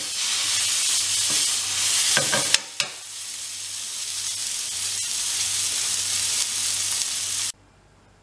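Beef tenderloin sizzling in butter and thyme in a hot frying pan, with a couple of sharp knocks about two and a half seconds in. The sizzle cuts off abruptly near the end.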